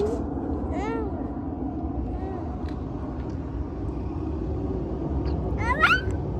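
A toddler making short, high-pitched wordless vocal sounds: an arching squeal about a second in, a faint one midway, and a rising one near the end, over a steady low background hum.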